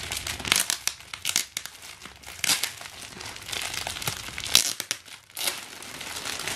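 Clear plastic packaging crinkling and rustling in irregular bursts as hands pull it open and off a new handbag. The loudest crackle comes about four and a half seconds in, followed by a short lull.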